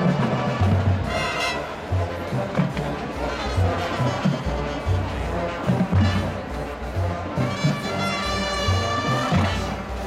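A marching band playing live: brass with a steady bass-drum beat, the brass swelling about a second in and again near the end.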